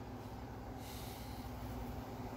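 Faint room tone with a low steady hum, and a soft breath from the person close to the microphone about a second in.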